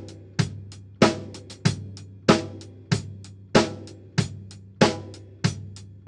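Recorded live drum kit played back through its room-mic track, a steady beat with strong and lighter hits alternating about every two-thirds of a second and faint hi-hat ticks between, each hit ringing out in the room. The track is run through a soft-tube distortion plug-in that has just been inserted to roughen it.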